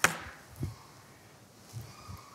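A sharp knock with a short falling swish after it, then a softer low thump about two-thirds of a second later.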